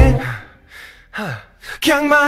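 The backing music drops out, leaving a breathy gasp and a sighing voice that slides down in pitch. The song's beat and vocals come back in just before the end.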